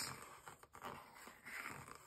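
Faint scratching of a mechanical pencil drawing lines on a paper journal page.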